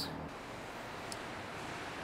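Steady, even background hiss with no distinct event, and one faint tick about a second in.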